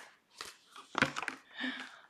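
Paper notes rustling and crinkling as they are pulled out from under other things, in a few short bursts, with a brief murmur of voice near the end.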